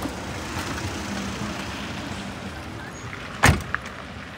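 Steady car engine hum, then a single loud thump about three and a half seconds in as an SUV's tailgate is shut, with a small click just after.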